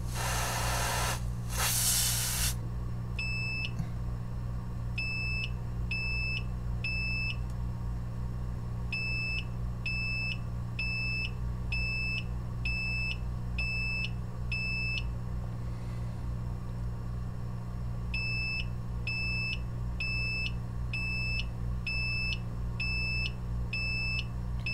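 Two short hisses of freeze spray. Then a bench DC power supply beeps about once a second in runs, a single clear tone with overtones, as it repeatedly sends voltage into a shorted line and cuts out: the cycling of its short-circuit protection. A steady low hum runs underneath.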